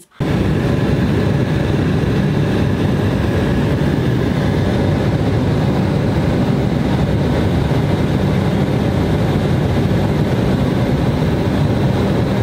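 Steady engine and cabin noise inside a passenger airliner taxiing on the ground, a constant low rumble under a hiss.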